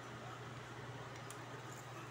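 Quiet background: a steady low hum under a faint hiss, with no clear sound event.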